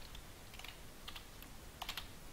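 Typing on a computer keyboard: a few faint, scattered key clicks, with a quick cluster of keystrokes near the end.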